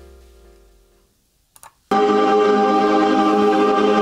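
A large barbershop chorus of men singing a loud, sustained chord a cappella, coming in suddenly about two seconds in. Before it, a faint music bed fades out.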